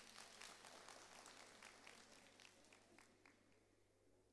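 Faint audience applause dying away, the clapping thinning to a few scattered claps and fading out before the end.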